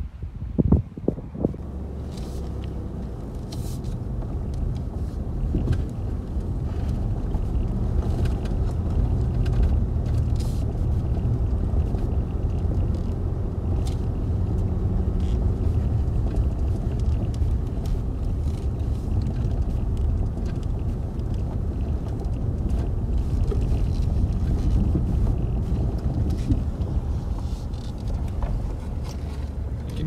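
Inside a car driving over a gravel track: steady low road rumble with scattered clicks and ticks. A couple of knocks sound about a second in.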